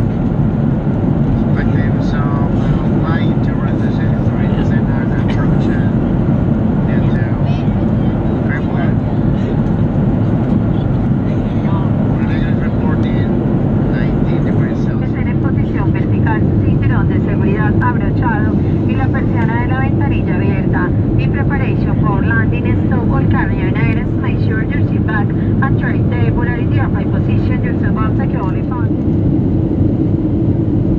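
Steady cabin noise inside a Boeing 737-700 in flight during descent: a loud, even rumble and rush from its CFM56 engines and the airflow past the fuselage. Voices talk faintly underneath, more from about halfway through.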